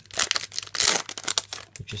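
Foil Yu-Gi-Oh Star Pack booster wrapper crinkling as it is pulled open and the cards slid out, a dense crackle that is loudest about a second in.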